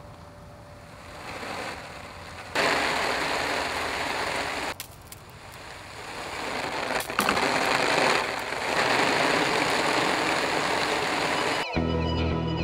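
Water from a garden hose spraying and splashing onto a thick clear plastic tarp, a steady hiss that starts a couple of seconds in, breaks off briefly around five seconds, then builds again and holds.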